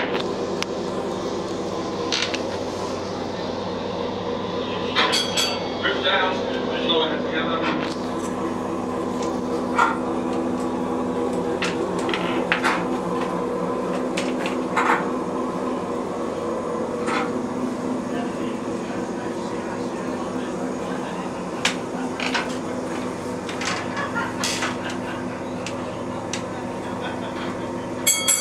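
A steady mechanical hum with several held tones, broken by scattered short knocks and clicks.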